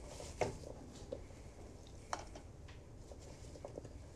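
Frozen fruit pieces being picked off a metal baking tray and dropped into a bowl. The result is a few faint, irregular clicks and taps, the sharpest about half a second in and another just after two seconds.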